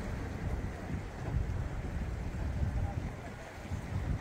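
Wind rumbling on the microphone over the wash of the sea against a rock breakwater: a steady low rumble without clear strokes.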